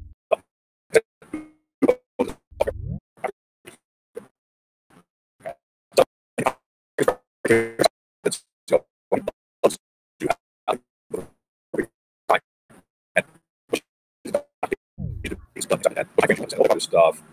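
A man's voice over a video call chopped into short clipped fragments, roughly two a second with dead silence between: audio dropouts from a poor connection. A few low, falling swoops break through as well.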